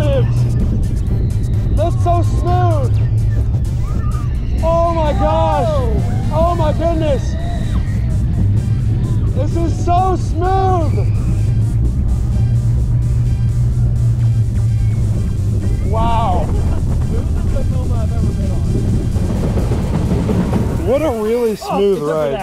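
Vekoma steel looping roller coaster train running on its retracked layout, a steady low rumble of wheels and wind, with riders whooping several times. The rumble cuts out near the end as the train reaches the brakes.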